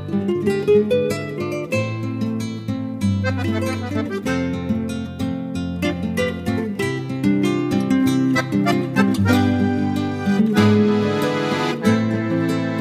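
Instrumental music: a guitar playing a run of plucked notes over held low bass notes, fuller and brighter near the end.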